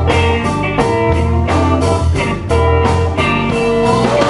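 Live blues band playing a passage without vocals: electric guitar over electric bass and a drum kit.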